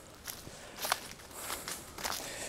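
Faint footsteps on a trail: a few soft steps over a quiet outdoor background.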